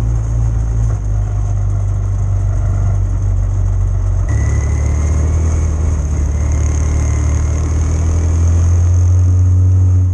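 Quarter midget's small single-cylinder Honda engine running at a steady moderate pace, heard from on board the car. The engine note shifts about four seconds in, with a faint whine, and it grows slightly louder near the end.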